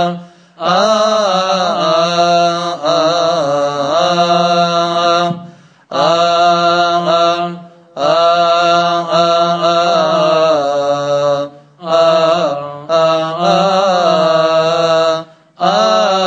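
Hymn chanted in phrases of a few seconds each, with short breaks between them.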